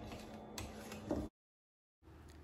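A metal spoon stirring thick bean batter in a bowl, faint, with two sharp clicks against the bowl about half a second apart. The sound then cuts off to dead silence.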